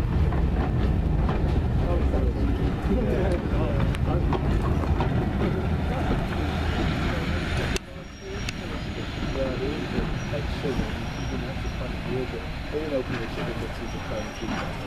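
Railway passenger coaches rolling past close by, a steady low rumble of wheels on rail. It cuts off abruptly about eight seconds in, leaving quieter sound with people talking as the train draws away.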